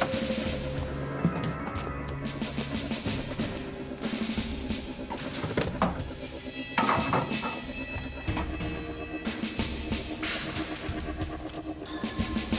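Dramatic background score with drums and percussion beating out a rhythm over sustained low tones.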